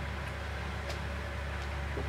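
Steady low hum with faint hiss: room tone, with one faint tick near the middle.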